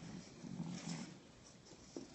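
A French bulldog making a faint, low vocal sound that lasts about a second and then fades.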